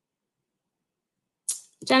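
Near silence, broken about a second and a half in by a short sharp click, then a woman's voice starting to speak at the very end.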